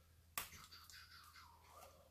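Near silence, broken by one sharp click about a third of a second in, followed by faint low rustling.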